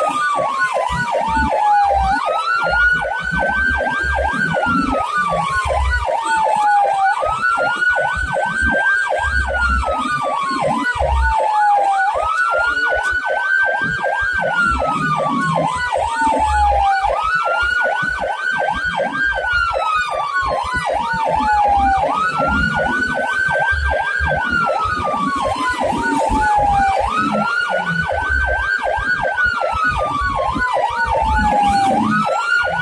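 Emergency responder vehicle's siren wailing: a tone that climbs slowly and then sweeps back down, repeating about every five seconds, over a faster pulsing siren tone. A low engine rumble runs underneath.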